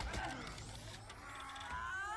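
Sound effects from the soundtrack of a live-action fight scene, with a whine that rises in pitch through the second half.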